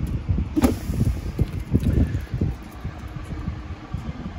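Wind buffeting the handheld microphone as a low, uneven rumble, with a single knock about half a second in.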